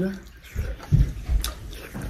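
Close-miked eating sounds: wet chewing and mouth noises as a mouthful of rice and curry, eaten by hand, is chewed, opening with a brief hummed voice and broken by a few low thuds and clicks.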